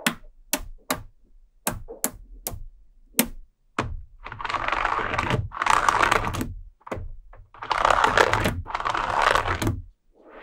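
Small neodymium magnetic balls clicking sharply into place, about seven snaps in the first few seconds, roughly two a second. Then four longer bouts of dense scraping clatter as the assembled magnet-ball rows are handled and rubbed against.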